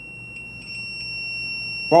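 Fire alarm sounding one steady, high-pitched continuous tone.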